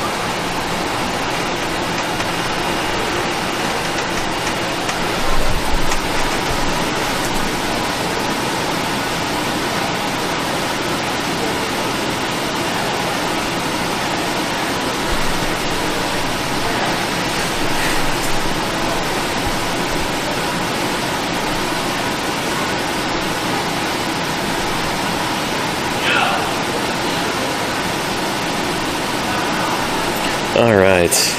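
A steady, fairly loud rushing hiss, like a fan or a noisy microphone, with a few low bumps about five to six seconds in and a short sweeping squeak near the end.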